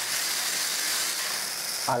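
Tamiya TT-01 RC car's electric motor and gear drivetrain running under throttle, with the wheels spinning freely in the air, a steady high whir. With the one-way fitted to the front axle, front and rear are both driven while the throttle is held.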